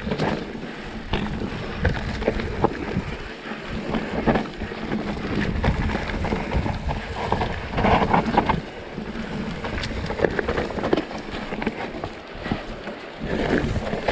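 Mountain bike descending a dirt singletrack: tyres rolling over dirt and roots, with frequent irregular clatters and knocks from the bike over the bumps, and a low rumble of wind buffeting the chest-mounted camera's microphone.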